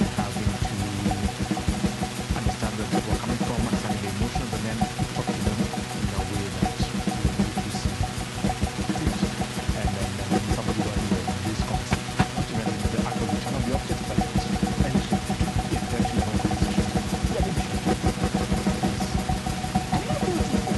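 Live electronic sound-art music: a dense, steady drone of several sustained tones over a fast, irregular low pulse, with a crackling noise texture on top.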